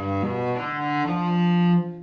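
Solo cello bowing a rising four-note arpeggio, a G major triad with the seventh added (the dominant seventh in C major). The last note is held longest and loudest and stops just before the end.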